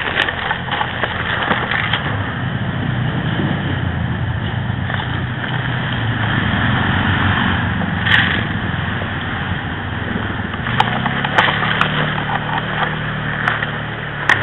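Close rustling and scraping of movement against pine bark, a fallen log and dry pine needles and twigs, with several sharp cracks about eight seconds in and again in the last few seconds.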